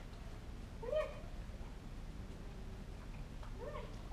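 Two short, pitched calls from a pet animal, one about a second in and one near the end, each rising then falling in pitch, over steady low background noise.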